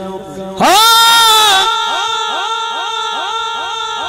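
A man's voice holding one long, loud sung note into a microphone, starting about half a second in, during a Punjabi naat recitation. The note trails off into a rapid series of fading repeats from a heavy echo effect on the sound system.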